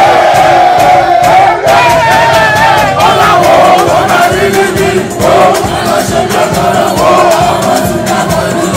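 A group of men chanting together in unison, loud and raucous, over music with a steady beat.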